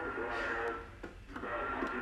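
Speech from a broadcast station coming through a 1926 Freshman Masterpiece battery radio and its 1920s loudspeaker. It sounds thin and narrow, with a steady high tone running under the voice. The sound dips briefly about a second in.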